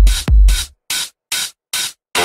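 Vixa/pumping dance music: a pounding kick drum with a falling-pitch thump on every beat, topped by hissy noise hits. Less than a second in, the kick and bass cut out, leaving only three short, hissy hits with silence between them, a brief break before the beat comes back.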